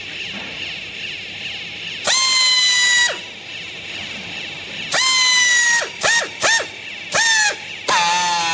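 Pneumatic strapping tool's air motor whining in bursts as it tensions and seals green plastic strap around a bale of clothes. Two bursts of about a second, about two and five seconds in, then three short ones in quick succession. Each whine jumps up in pitch at the start and sags slightly as it loads.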